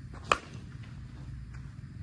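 A 2024 Axe Inferno senior slowpitch softball bat striking a pitched softball: a single sharp crack just after the start, from a barrel the hitters call dead, with no trampoline left.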